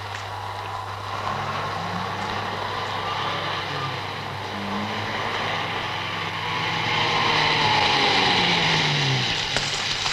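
Car engine and street traffic: a car drives past, growing louder to a peak a little past the middle and falling in pitch as it goes by, over a steady low hum.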